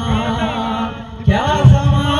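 A man singing live into a microphone, amplified through stage loudspeakers, over a backing beat.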